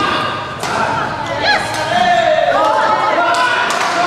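Badminton rally in an echoing hall: sharp racket strikes on the shuttlecock, one at the start, one just over half a second in and two more near the end, with a brief squeak about one and a half seconds in.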